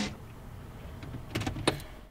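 Car stereo switched off, leaving a low steady hum in the car, with a few sharp clicks about a second and a half in.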